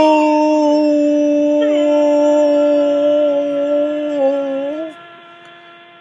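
A man's long drawn-out 'Goooal!' shout in the style of a soccer commentator, held on one high pitch for about five seconds, wavering shortly before it breaks off.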